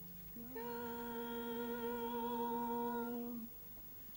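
Voices holding one long, soft final note of a stage duet with a slight vibrato for about three seconds, with no accompaniment, then stopping.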